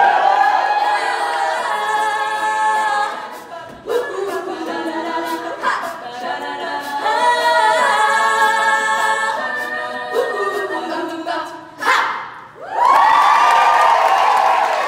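Women's a cappella group singing close-harmony held chords under a lead soloist, with no instruments. The phrases break off and come back in a few times, and a loud sustained chord starts near the end.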